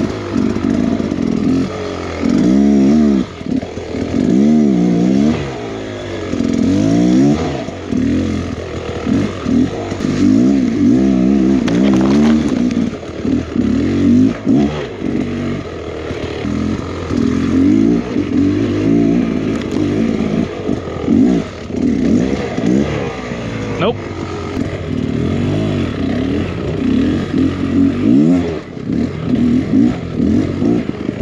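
Beta X Trainer 300's two-stroke single-cylinder engine, heard from the rider's seat, revving up and down in short bursts as the bike is worked over slippery roots and rocks. The pitch rises and falls every second or two, with a couple of sharp knocks along the way.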